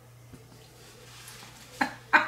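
Faint clinks and scraping of a fork stirring noodles in a bowl, with a brief loud sound near the end.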